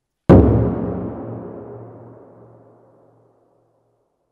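A single strike on a large taiko drum with wooden bachi, a sharp hit about a third of a second in followed by a deep ringing boom that dies away over about three seconds in the reverberant space of a large stone church.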